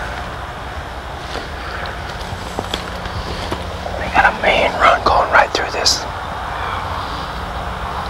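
Dry corn stalks and leaves rustling and crackling as people push through a standing cornfield, over a steady low hum. A cluster of louder rustles comes about four to six seconds in.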